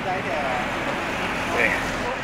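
Men's voices chatting at a distance, heard in brief snatches, over a steady outdoor street background hum.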